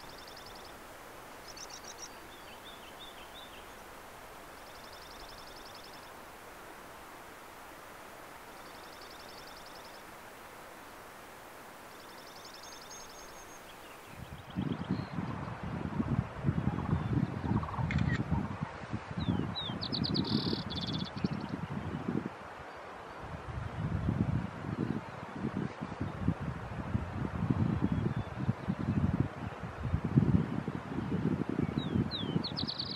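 A songbird repeating a short high trill every few seconds over a faint outdoor hiss. About halfway through, the sound changes abruptly to gusty wind buffeting the microphone in irregular rumbling gusts, with one more bird call a few seconds later.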